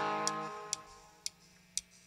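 Electric guitar note ringing out and fading in the first half second, then sharp quiet ticks about twice a second, keeping time, with faint bent guitar notes between them.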